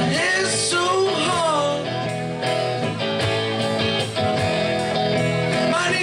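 Live rock band playing electric guitars, bass guitar and drum kit, with notes sliding up and down in the first two seconds.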